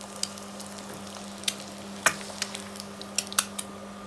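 An egg deep-frying in hot oil in a wok, sizzling steadily with frequent sharp pops and crackles.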